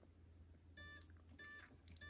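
Spektrum Avian ESC power-up beeps sounded through the motor: three short, faint beeps about 0.6 s apart, the signal that the ESC has initialized after the battery is connected.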